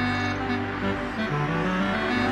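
Background music of held notes changing in pitch, with a car driving along the road underneath.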